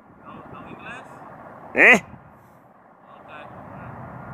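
A man's voice calls out once, briefly, with rising pitch, about two seconds in. Faint voice fragments and steady low background noise fill the rest.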